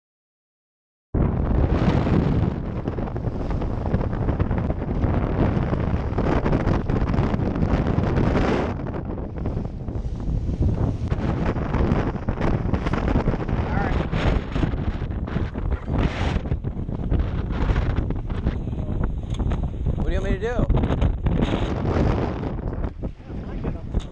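Strong wind buffeting the microphone as a small outboard-powered skiff runs fast through choppy water, with spray and the hull knocking on the waves. The sound cuts in suddenly about a second in, after a moment of silence, and stays loud and dense throughout.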